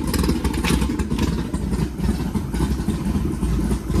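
Skip White 551 hp stroker small-block Chevrolet V8 in a Donzi 16 boat running steadily at idle on its first start-up, smooth and quiet.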